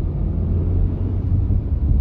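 A car driving at about 50 km/h, heard from inside the cabin: a steady low rumble of engine and tyres.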